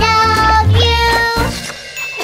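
Children's sing-along song: a child-like voice sings two long held notes over a backing track with bass, the music dropping away about a second and a half in.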